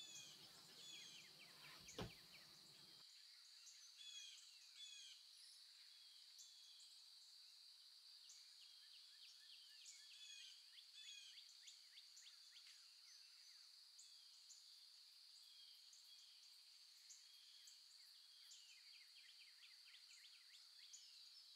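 Faint nature-sounds track: many small birds chirping and twittering over a steady high-pitched tone, with a single faint click about two seconds in.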